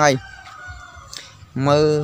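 A rooster crowing faintly in the background: one long held call through the middle, between stretches of a man's speech.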